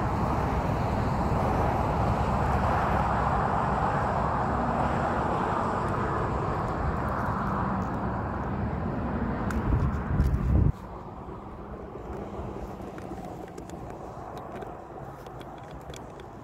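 Steady road traffic noise with a heavy low rumble over it that cuts off suddenly about eleven seconds in, leaving the traffic fainter, with a few light clicks near the end.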